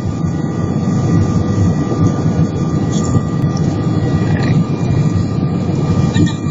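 Loud steady rumble inside an airliner cabin during landing: jet engine and airflow noise, with a faint steady whine above it.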